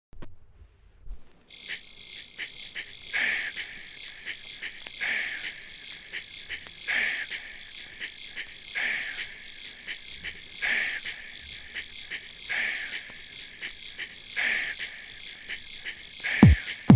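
Intro of a 1990s house track with the low end filtered out: fast ticking hi-hats with a swishing cymbal swell that falls in pitch, once about every two seconds. It begins after about a second of near silence.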